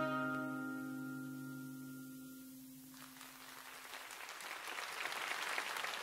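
The final chord of a pop song rings out and fades away over about three seconds. Then applause starts and grows louder.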